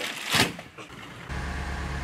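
Steady low rumble of a bus engine running, starting abruptly about a second in, after a short burst of noise.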